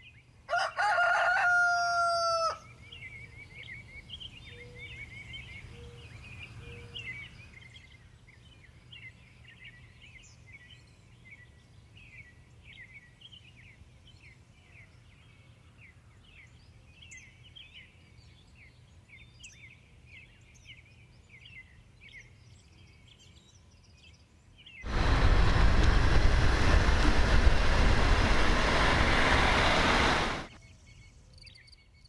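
A rooster crows once, loud, about half a second in. Small birds then chirp faintly for a long stretch. Near the end a Czech Railways class 814 Regionova diesel railcar passes close by, a loud steady rush that cuts off suddenly.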